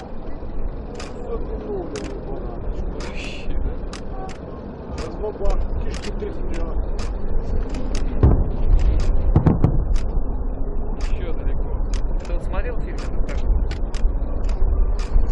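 Distant fireworks: irregular sharp bangs and crackles over a low rumble, with two heavier booms a little past the middle.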